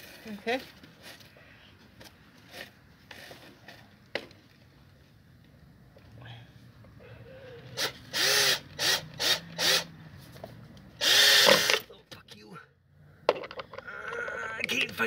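Cordless drill driving a screw into a wooden board: a run of short trigger bursts, each with a quick rising whine, starting about eight seconds in, then one longer, louder run near the end.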